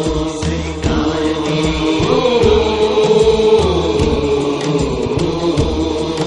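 Devotional naat singing: a voice holding a long, slowly bending note over a steady low beat about twice a second.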